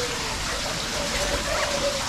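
A steady hiss of noise, like rain or running water, with no clear separate events.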